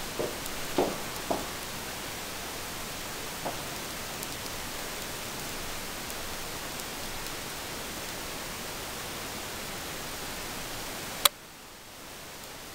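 Steady even hiss with a few light knocks in the first few seconds. A sharp click comes near the end, after which the hiss is quieter.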